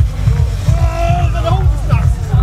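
Electronic dance music with a pulsing kick drum and bass over an open-air sound system, with a voice calling out over it about a second in.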